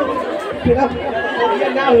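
Several voices talking and calling out over one another, with a man calling "oi" near the end.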